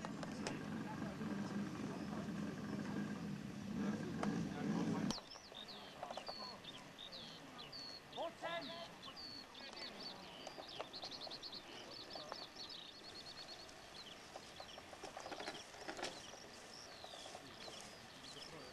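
A steady low rumble cuts off abruptly about five seconds in. After it, birds sing: many short chirps and a fast trill.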